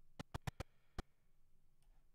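A run of six sharp clicks from a computer mouse and keyboard being worked. Five come in quick succession and the last comes about a second in.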